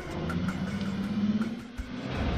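Car engine accelerating as the car pulls away, its pitch rising for about a second and a half and then dropping off, with background music.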